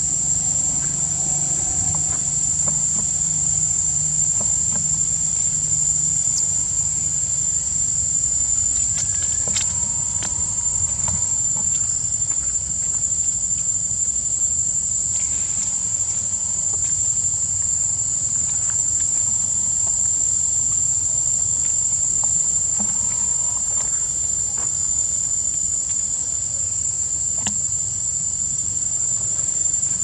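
Steady, unbroken high-pitched drone of insects in tropical forest, holding one level throughout.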